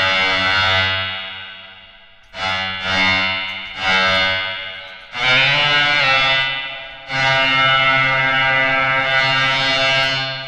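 Bowed-string sound from a physical-modelling patch on an Empress Zoia synthesizer pedal, made by filtered noise driving a Karplus-Strong resonator. A series of sustained notes swell in and die away, each entering at a new pitch, and the last is held for about three seconds. It sounds like bowed strings.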